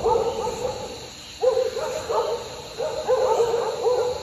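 Repeated short hooting animal calls, coming in quick runs of several notes with brief gaps between the runs.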